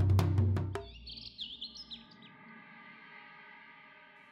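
Dramatic background score of rapid, loud drum strokes over a low held note, cutting off abruptly under a second in. Then a few quiet bird chirps over a faint, steady sustained chord.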